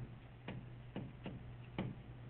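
A stylus tapping and clicking on a tablet screen while handwriting, about five sharp, irregularly spaced ticks.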